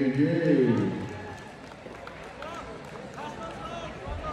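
A man's voice, loud in the first second, then a quieter stretch of crowd murmur with faint, scattered distant voices.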